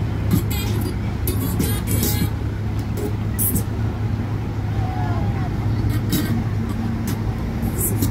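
Motor yacht's engines droning steadily with the boat under way, a constant low hum under a rushing wash of wind and water noise.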